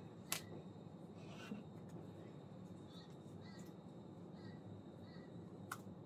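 Quiet room hum with faint handling of a nylon stocking as it is pulled up and smoothed on the thigh. There are two sharp clicks, one just after the start and one near the end.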